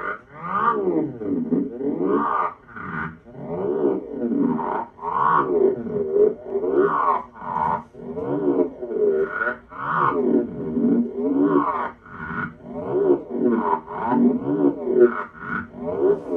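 Electronic improvisation on Moog Moogerfooger analog effects modules: a dense, continuous tone whose pitch sweeps up and down in overlapping arcs, swelling and falling back roughly once a second.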